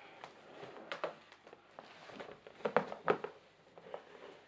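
Cardboard shipping box being handled and flexed as a case is worked out of it: scattered rustles, scrapes and knocks, the sharpest about a second in and a couple near three seconds in.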